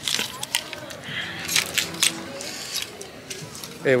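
Clothes hangers clicking and scraping on a metal clothing rack as garments are pushed along, with fabric rustling close by: a quick string of sharp clicks.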